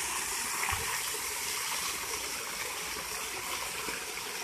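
Small waterfall spilling in thin streams over a rock overhang and splashing onto stones below, a steady hiss of falling water.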